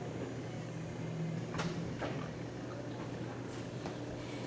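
Quiet room tone with a steady low hum, broken by a few faint, brief knocks, the most distinct about a second and a half in.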